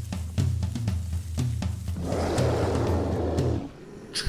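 Intro music with a drum kit and bass playing a steady beat, a noisy swell building in its second half, then the music cuts off shortly before the end.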